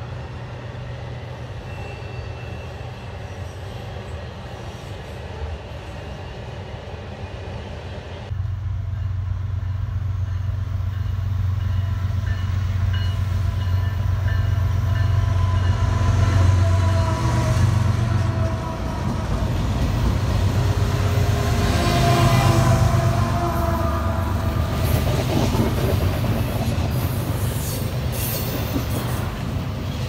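Freight train cars rolling over a bridge with a steady rumble. About eight seconds in, it cuts to a louder scene: four BNSF diesel locomotives pass close by with a low engine drone that peaks around the middle, followed by double-stack intermodal container cars rolling past.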